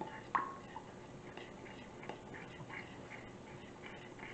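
Metal spoon stirring dressing in a glass bowl. There is one sharp clink with a short ring about a third of a second in, then light, irregular ticks and scrapes of the spoon against the glass.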